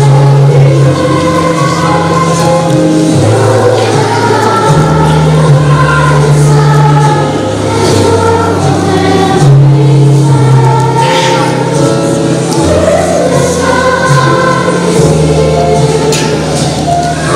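A children's choir singing together to an accompaniment, with held low bass notes that change every second or two under the voices.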